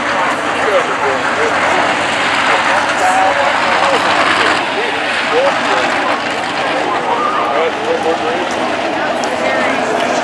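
A field of dirt-track modified race cars running at caution pace, a steady engine noise, with grandstand crowd chatter over it.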